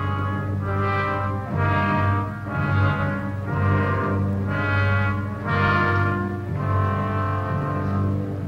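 Orchestral documentary score led by brass, playing sustained chords over steady low notes, swelling and easing back about once a second.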